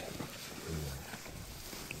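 Quiet background noise with a brief, faint low voice sound, like a murmured 'hmm', a little under a second in.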